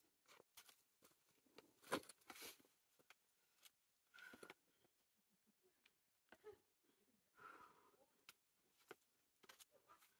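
Mostly near silence, broken by a boulderer's scattered scuffs and taps of hands and climbing shoes on rock and a few short, sharp breaths of effort, the loudest about two seconds in.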